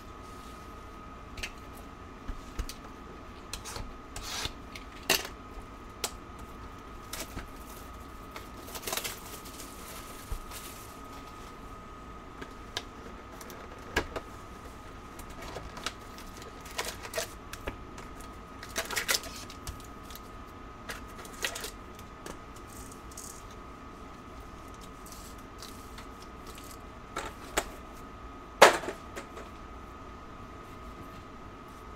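Trading-card boxes and foil packs being handled and opened: scattered clicks, rustles and crinkles, with a sharper knock near the end.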